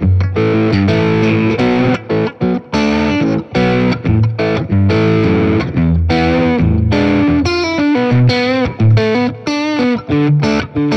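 Electric S-style guitar with all three Lindy Fralin Vintage Hot single-coil pickups switched on, played through an overdriven tone: a continuous lead line of picked notes and chord stabs with bent notes. Near the end the notes waver with a fast vibrato.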